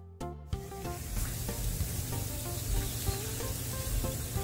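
Shrimp sizzling on a charcoal grill grate. The sizzle comes in about half a second in, over background music with plucked notes.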